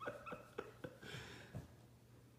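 Faint sounds from a husky lying on its back: a few soft short clicks in the first second, then a brief breathy huff about a second in.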